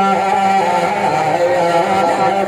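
A man singing a devotional Urdu naat into a microphone, holding long melodic notes that move slowly in pitch.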